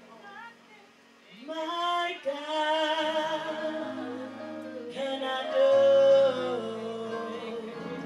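Live worship singing: a woman's voice holding long, drawn-out notes over sustained chords. The singing comes in about a second and a half in and is loudest just past the middle.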